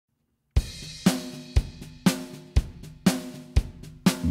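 Solo drum kit playing a steady beat that opens a song, bass drum and snare alternating at about two hits a second with cymbals ringing over them, starting about half a second in.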